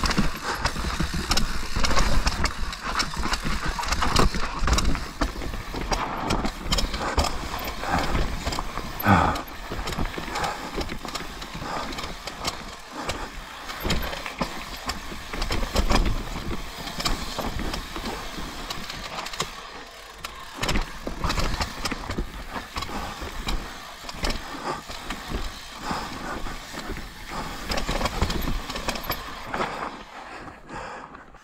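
Mountain bike ridden down a steep, rocky dirt trail: tyres rolling over dirt and rocks, with frequent knocks and rattles from the bike over the bumps. The noise is loud and continuous.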